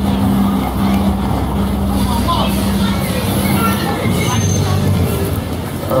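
A motor vehicle engine running steadily close by, a low hum that shifts lower about four seconds in, with faint voices in the background.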